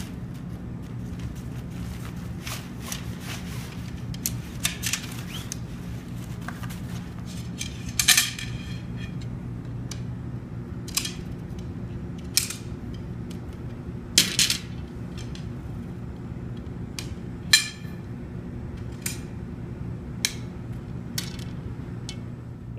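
Shock-corded pole sections of a banner stand being unfolded and fitted together, giving scattered sharp clicks over a steady low hum.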